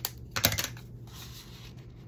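Paper and card being handled: a sharp click, then a quick cluster of crisp crackling clicks about half a second in, and a soft rustle of paper sliding against paper as a tag is worked into a paper pocket on a journal page.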